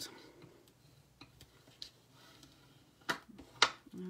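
Bone folder creasing and burnishing folded card stock: faint rubbing and a few light ticks, then two sharp clicks of paper and tool about half a second apart near the end.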